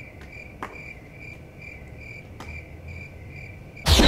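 Cricket chirping sound effect: a high chirp repeating a few times a second, the comic "crickets" that answer a call for applause with silence. A few faint clicks, and a short loud burst near the end.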